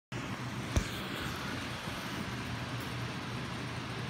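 Steady rumble and hiss of a car interior, with a single sharp click about three-quarters of a second in.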